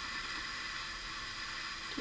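Steady background hiss of the recording's noise floor, with no distinct sound event.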